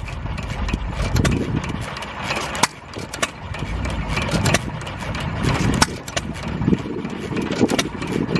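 Several antique flywheel stationary gas engines running, a steady low chugging broken by sharp exhaust pops at uneven intervals.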